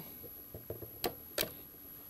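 Faint clicking from a homemade waste-oil dosing rig, a slowly turning Perspex toothed wheel tripping a micro switch that pulses the dosing pump. Two sharp clicks come about a third of a second apart a little after a second in, with fainter ticks before them.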